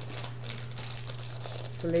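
Plastic candy bag of individually wrapped milk chocolates crinkling as it is handled, a continuous rustle of fine crackles over a low steady hum.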